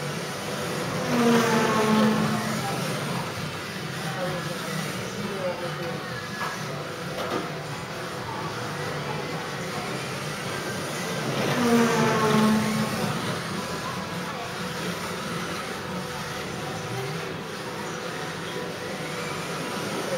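Kyosho Mini-Z 1:28-scale RC cars' small electric motors whining as they sweep past close by, about a second in and again some ten seconds later, once per lap, over a steady background hum.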